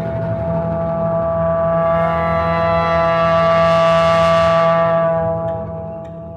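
Orchestra holding a sustained chord that swells, brightest about four seconds in, then fades near the end.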